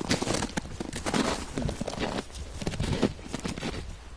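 Footsteps in snow: a person walking away at a steady pace, about two steps a second.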